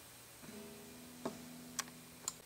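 Steel-string acoustic guitar string ringing faintly: one held note that starts about half a second in and fades slowly, with three light clicks over it.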